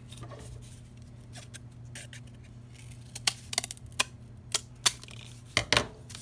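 Scissors cutting through corrugated cardboard: soft handling at first, then a run of sharp snips through the second half.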